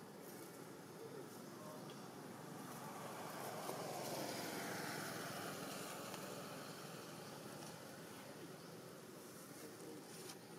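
A vehicle passing by, its sound swelling to a peak about four to five seconds in and then fading away.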